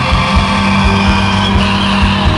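Loud live band music at an arena concert, with a low note held steady under a regular beat.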